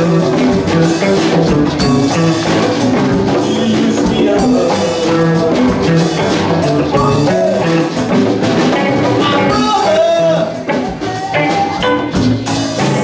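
Live Latin-rock band playing: electric guitars, bass, drum kit and congas, with a steady beat.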